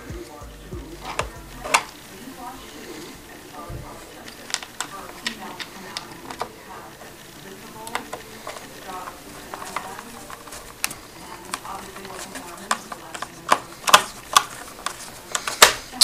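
Screws being driven back into a Gateway computer's case: scattered sharp clicks and scraping of screw and screwdriver on the case, with hand-handling noise close to the microphone. The loudest clicks come near the end.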